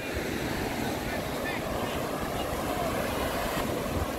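Steady beach ambience: a continuous wash of noise with faint voices in the background.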